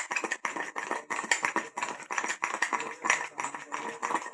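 Metal spoon beating a thick coffee paste in a ceramic mug, knocking and scraping against the mug in rapid, irregular strokes, about five a second.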